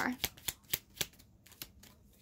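Tarot cards being shuffled and handled: a handful of quick, irregular card snaps in the first second or so, then they stop.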